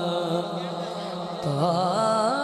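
A naat sung by a solo male voice through a PA system over a steady low drone. The melodic line thins out for about a second and a half and comes back strongly near the end.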